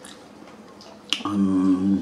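Quiet room tone, then a single sharp click about a second in, followed by a man's voice holding one drawn-out hesitation sound on a steady pitch.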